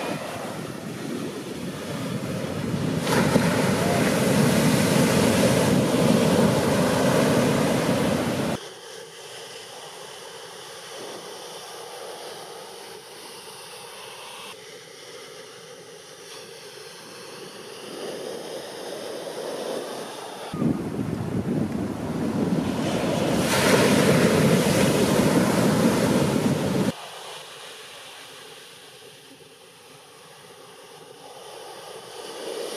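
Ocean surf breaking, with wind buffeting the microphone. It is loud for about the first eight seconds and again from about twenty to twenty-seven seconds, dropping suddenly to a much softer wash of surf in between and near the end.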